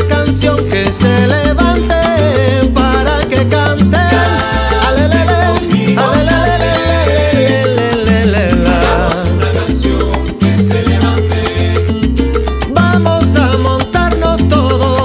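Salsa-style Cuban band music with a repeating bass line, busy percussion and melodic instrumental lines, playing steadily with no lead vocal.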